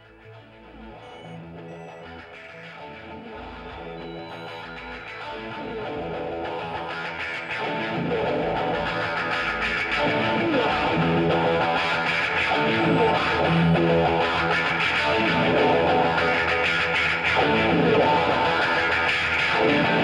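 Venezuelan rock song intro in which effected electric guitar and other instruments swell steadily louder, building from quiet to full volume.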